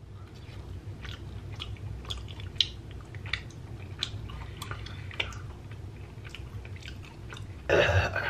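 Close-up chewing of a bite of grilled giant scallop: soft, moist mouth clicks, about two to three a second. A louder vocal sound starts near the end.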